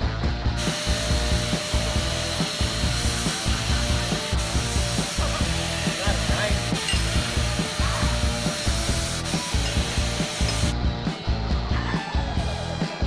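A steady rasping noise of shop work, like a tool working metal, starts about half a second in and cuts off abruptly near the end. Background music with a steady beat runs underneath.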